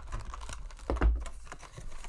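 Fingers tapping and scraping on a cardboard trading-card hobby box as its lid flap is pried up and opened: a run of small irregular clicks, with a soft thump about a second in.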